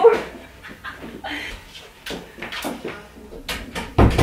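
A dog whimpering and panting softly, broken by a few short, sharp knocks.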